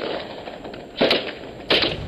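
Two gunshots about two-thirds of a second apart, each sharp and loud with a short ringing tail.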